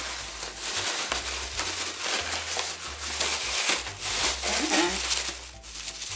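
Shredded paper filler rustling and crinkling as a hand rummages through it inside a cardboard box compartment, a continuous crackly rustle.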